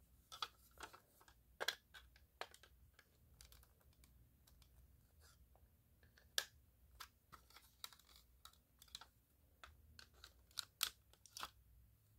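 Faint, irregular plastic clicks and scrapes as a smoke detector's plastic housing is pried at to release its retaining clips.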